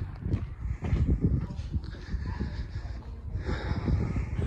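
Irregular low thuds and rubbing rumble of a phone's microphone being handled while its holder walks.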